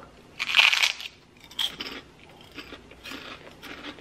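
A pork rind bitten with one loud crunch about half a second in, then chewed with softer, scattered crunches.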